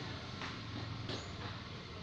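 Steady background noise with a faint low hum, no distinct sound event: room tone during a pause in talking.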